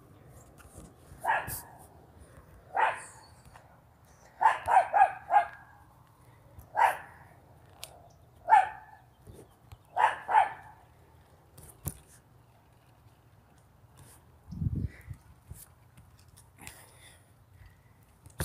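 A small dog barking in short separate barks, with a quick run of four about four and a half seconds in. The barking stops after about ten seconds; a couple of clicks and a low thump follow.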